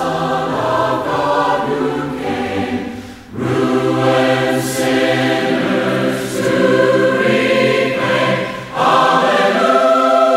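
A choir singing a slow hymn in long held chords, the phrases broken by brief breaths about three seconds in and again near the end.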